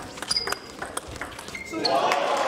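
Table tennis rally: the celluloid ball clicking off bats and table in quick, irregular succession, with a couple of short high squeaks. A wash of crowd noise swells right at the end as the point finishes.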